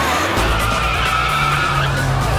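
Car tyres squealing in a long skid as a Volvo saloon is driven hard, its engine running underneath, with background music.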